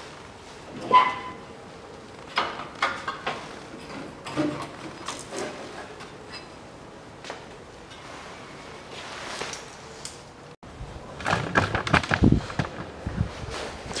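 Scattered knocks, clicks and clatter of a Land Rover Series III's sheet-metal dashboard panel and parts being handled during dismantling. There is a sharp clank about a second in and a busier run of knocks and thuds in the last few seconds.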